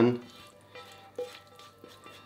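Silicone spatula scraping filling from a frying pan into a metal strainer, quiet, with two light taps, one about a second in and one near the end, over faint background music.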